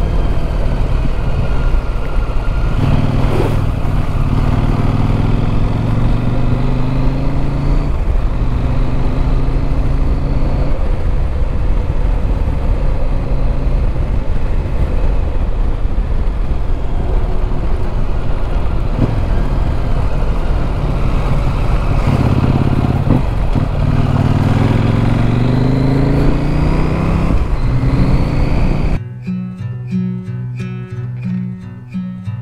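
Parallel-twin adventure motorcycle riding on a gravel road, its engine pitch rising in several long pulls as it accelerates through the gears, over steady wind and tyre noise. Acoustic guitar music comes in about a second before the end.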